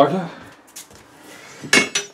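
A thin metal rod knocks against metal once with a sharp clink that rings briefly, followed by a smaller click, near the end.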